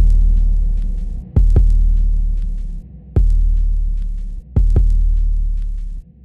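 Deep booming bass-drum hits in a slow heartbeat-like rhythm: a quick double hit, then a single one, repeating about every second and a half. Each hit rings on and fades away. The sound cuts off suddenly at the end.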